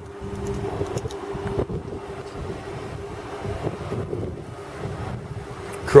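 Wind buffeting the microphone, with a steady low hum underneath that is strongest for the first second and a half.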